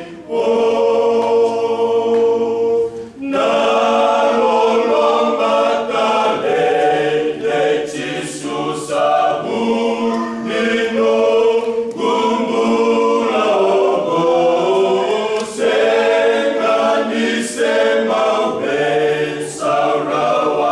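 Men's choir singing a cappella in close harmony: one long held chord, a short break about three seconds in, then the voices move on through changing chords.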